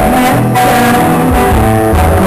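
Rock band playing live: electric guitar over bass guitar, the notes moving steadily.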